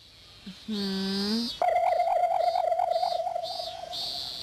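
Cartoon soundtrack sound effects: a short low electronic tone, then about a second and a half in, a steady wavering tone that pulses about five times a second. A thin high insect-like drone runs underneath.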